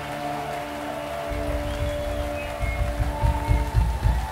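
A live rock band holding its closing chord, several sustained notes ringing on, while heavy drum hits come in about a second in and grow louder toward the end. A crowd clapping and cheering underneath.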